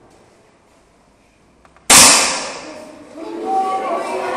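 A single target rifle shot about two seconds in: one sharp, loud crack whose echo fades over about a second. Children's voices then rise in reaction.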